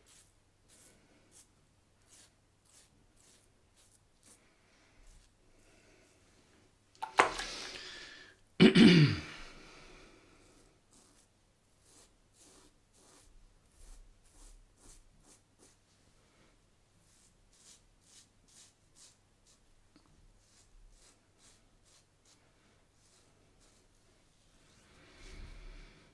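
Safety razor being drawn in short, faint scraping strokes over lathered stubble. About seven and nine seconds in, two loud throat or breath noises, like a cough or a sneeze, each falling in pitch.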